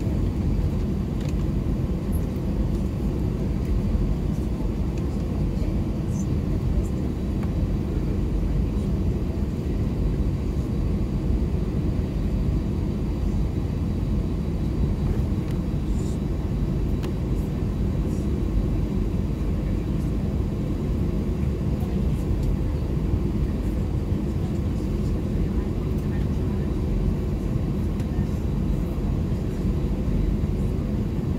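Steady low rumble inside the cabin of an Airbus A320 as it taxis, its jet engines at idle.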